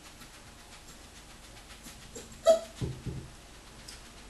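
Parson Russell terrier puppy giving one short, sharp yip about two and a half seconds in, followed by two or three shorter, lower sounds.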